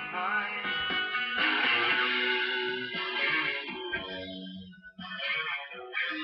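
A song with guitar playing, with a brief dip in level about five seconds in.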